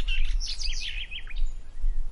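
Small birds chirping in a quick run of short calls through the first second and a half, over a steady low rumble.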